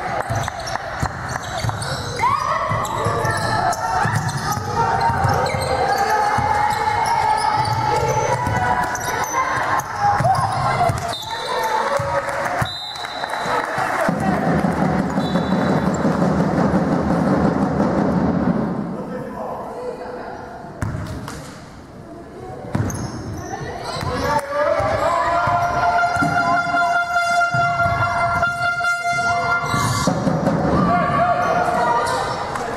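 Basketball game sounds in a large hall: the ball bouncing on the court floor amid players' and spectators' voices, echoing.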